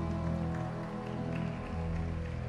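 Slow instrumental music for an ice dance free dance, with long held notes.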